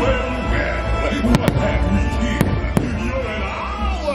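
Fireworks bursting over a loud show soundtrack: four sharp bangs between about one and three seconds in, over steady music with a heavy bass.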